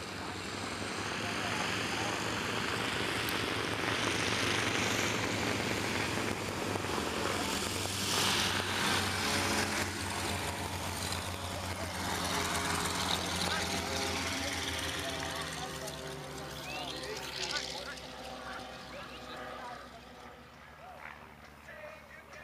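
A propeller aircraft's piston engine drones steadily, swelling to its loudest in the first half and fading away over the last several seconds as it passes.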